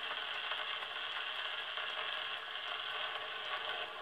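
Wind-up portable gramophone with its needle still running on a spinning 78 rpm shellac record after the music has ended: steady surface hiss through the horn with faint, regular clicks.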